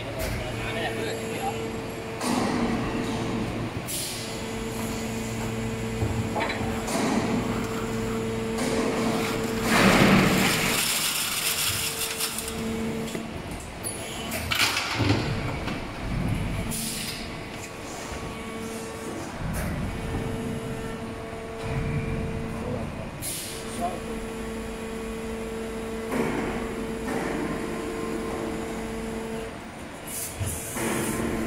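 Plastic injection moulding machine running a PET preform mould through its cycle of opening and closing. A steady two-tone machine hum breaks off and resumes several times, with scattered knocks and a loud burst of hiss about ten seconds in.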